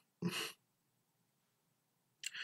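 A man's short breath, about a third of a second long, soon after the start, followed by near silence.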